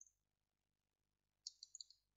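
Near silence broken by faint clicks of computer input: one click at the start and a quick run of about six small clicks near the end.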